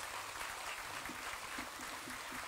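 Concert audience applauding after a song: a steady patter of many hands clapping, fairly quiet.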